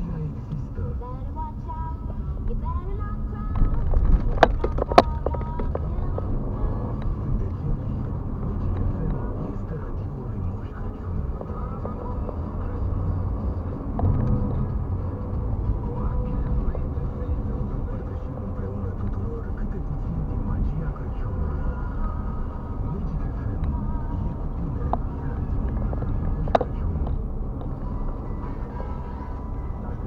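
Car driving at night heard from inside the cabin: steady engine and tyre rumble on the road. A few sharp knocks come about four to five seconds in as the wheels cross the rails of a level crossing, and there is a single click later on.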